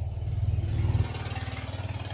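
A motor running with a low, finely pulsing rumble. It swells to its loudest just before a second in, then eases a little and holds steady.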